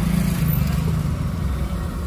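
Motorcycle engine running at low revs as it rolls slowly past close by, over a steady engine hum, heard from inside a car.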